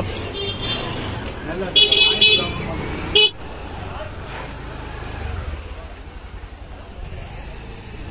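Motorbike horn honking in short bursts, once about half a second in and again around two seconds in, over busy street noise and voices. Near three seconds the sound drops suddenly to quieter market-street bustle.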